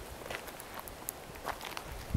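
Footsteps on dry dirt and fallen leaves, a few scattered soft crunches over faint outdoor hiss.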